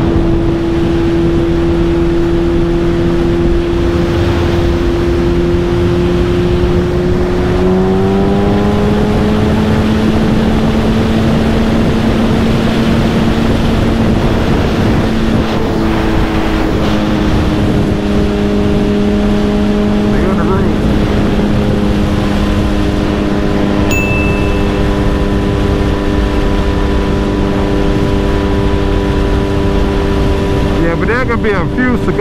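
Suzuki Hayabusa's inline-four engine running at highway speed under a steady rush of wind and road noise. The engine note rises in pitch about eight seconds in, and changes again about halfway through.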